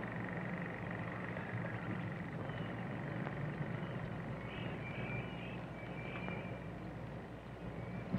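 Quiet woodland ambience: a few faint, short bird chirps in the middle and later part, over a steady low hum and hiss.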